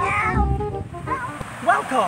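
A child's high-pitched squeal that falls in pitch, followed by shorter high cries, over background music.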